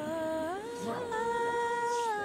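A solo voice singing wordless long held notes, sliding up to a higher note about half a second in and holding it.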